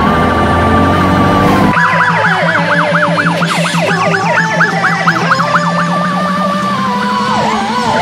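Emergency vehicle electronic siren: a steady high wail that switches about two seconds in to a fast yelp of rapid up-and-down sweeps, several a second, then goes back to a steadier wail with a dip near the end.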